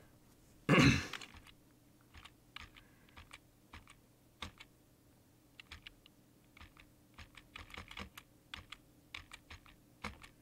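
Computer keyboard keys clicking in scattered taps, with a short, loud burst of noise about a second in.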